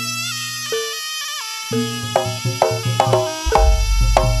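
Jaranan accompaniment music: a held melody line, then about halfway in quick pitched percussion strikes take over, and a deep drum comes in near the end.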